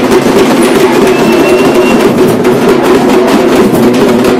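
Loud, rapid drumming of a street procession, the strokes coming thick and steady without a break.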